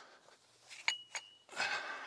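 A pair of 20 lb dumbbells picked up from the floor, knocking together twice in quick succession; the first knock rings briefly.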